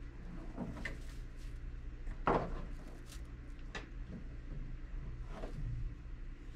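Rope lines being handled: a tug line pulled through a bungee loop and cinched, giving scattered soft rustles and brushes of rope. The loudest comes a little over two seconds in, over a low steady hum.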